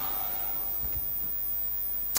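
Steady low electrical mains hum.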